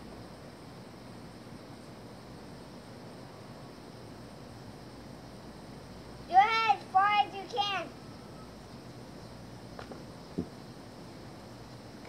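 A child's voice giving three short, high-pitched calls in quick succession, each rising and falling in pitch, over a steady background hiss. A single short knock comes near the end.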